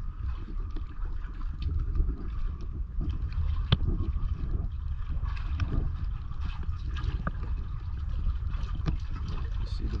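Water sloshing and lapping against a seawall under a dock, with scattered drips and small clicks over a low rumble. A man's voice starts at the very end.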